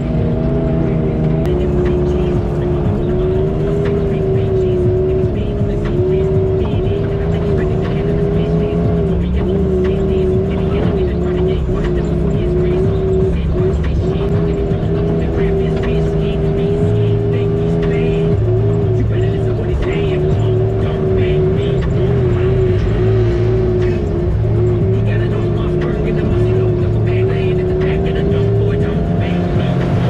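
Side-by-side UTV engine running steadily at low trail speed, its drone wavering slightly up and down with small throttle changes over a rough dirt track.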